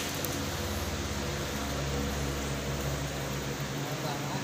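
Steady low mechanical hum under an even hiss, unchanging throughout.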